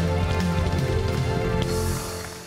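Live band holding steady chords over audience applause; the music stops near the end.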